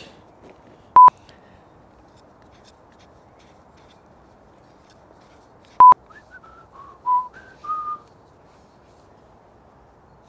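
Two short, loud electronic beeps at one steady pitch, about five seconds apart, like an edit bleep or test tone. Just after the second beep, a person whistles a short run of six or so notes that step down and then up.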